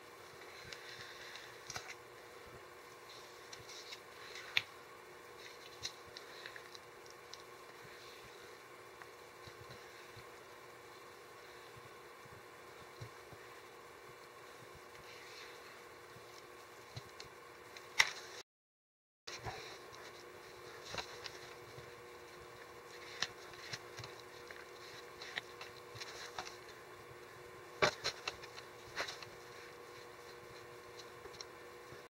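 Thick monster mud (joint compound with latex paint mixed in) being stirred by hand with a stick in a plastic bucket: soft scraping and squishing with scattered sharp clicks of the stick against the bucket, over a steady faint hum. A sharp click just past the middle is followed by a brief cut to silence.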